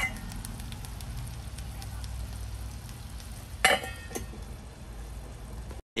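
A pan of chicken and potatoes simmering in its braising liquid, a steady low bubbling with faint crackles. A glass pan lid clinks against the pan at the start, and rings more loudly a little past halfway, with a smaller knock just after.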